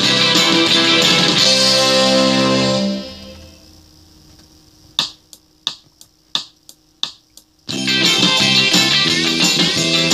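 Music of a C major arpeggio exercise plays and dies away about three seconds in. Then eight short, evenly spaced clicks, about three a second, count in, and the loud music starts again.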